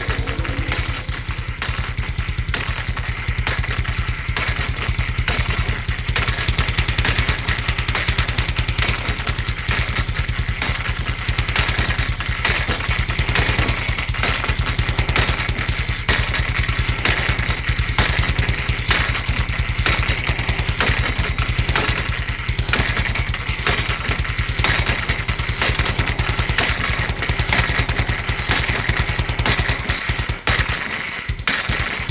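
Live industrial noise music without vocals: a fast, engine-like pulsing drone from drum machine and bass under a dense rasping metallic noise, the band's lineup including an angle grinder, hammer and iron worked as instruments.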